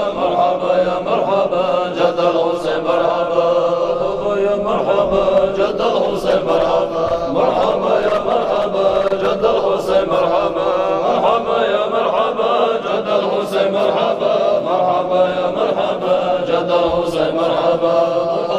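A group of men chanting a mawlid hymn together, many voices in one continuous chant without a break.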